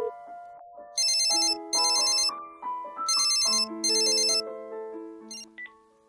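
A telephone ringing with a shrill electronic trill in two double rings, ring-ring, pause, ring-ring, over soft background music of marimba-like notes.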